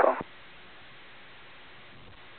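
Faint, steady hiss of an air-band radio receiver tuned to a control tower frequency, between transmissions, after a radio voice cuts off a fraction of a second in.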